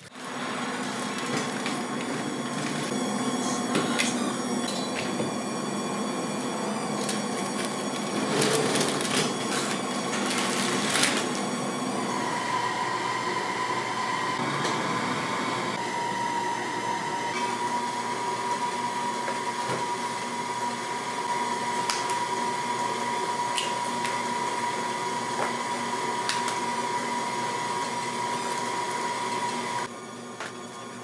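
An electric kitchen appliance motor running steadily, its pitch stepping down slightly twice partway through. A few clattering knocks come in around eight to eleven seconds in.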